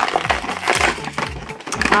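Clear plastic blister packaging crackling and crinkling as the toy pieces are handled and pulled out of it, over background music with a steady beat.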